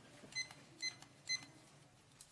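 Three short, high electronic beeps, about half a second apart.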